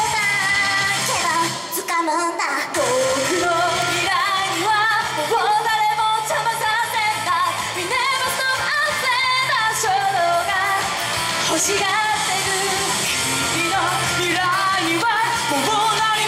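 Japanese idol pop song performed live: female voices singing into microphones over loud amplified music with a steady beat, which briefly drops out its low end about two seconds in.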